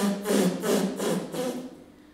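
Nuns' voices chanting a line of prayer, with sharp 's' sounds, fading out near the end.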